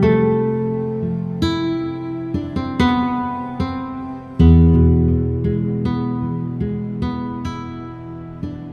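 Sampled nylon-string guitar from the Heavyocity Foundations Nylon Guitar virtual instrument, playing arpeggiated plucked notes that ring and fade, blended with the instrument's soft textural layer. A louder, fuller low chord is struck about four and a half seconds in.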